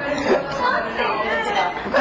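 People chattering, with voices overlapping in indistinct conversation.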